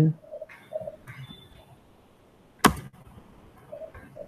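Faint low cooing calls, a few soft notes near the start and again near the end, with one sharp click a little past halfway through.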